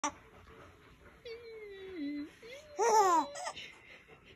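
A baby vocalising: a long, falling coo, then a short, loud laugh a little before the three-second mark.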